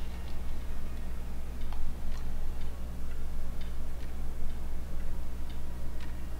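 Horror film soundtrack: a steady low drone with faint, regular ticks about twice a second.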